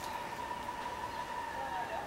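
A distant opera singer holding one long high note, heard faintly.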